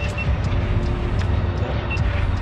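Steady low rumble of a sport-fishing boat's engine running, with a faint steady hum over it.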